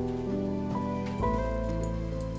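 Background drama score: slow, sustained chords, with a deeper bass note coming in a little past the middle.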